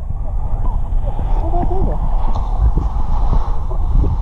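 Muffled underwater sound from a submerged camera: a dense, steady low rumble of water against the housing with scattered clicks and crackles, and all the high sounds cut off. A few faint wavering tones sound through it.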